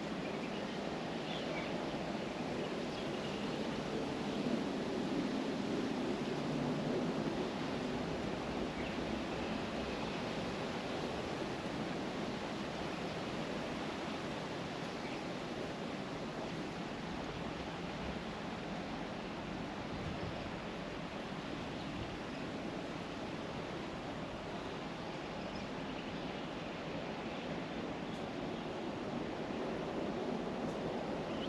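Steady rushing background noise with no distinct events, heaviest in the low-mid range.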